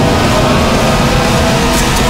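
Loud, steady music of a film trailer.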